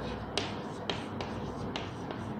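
Chalk writing on a blackboard: a few sharp, irregular chalk taps and strokes as letters are written, the loudest about a third of a second in.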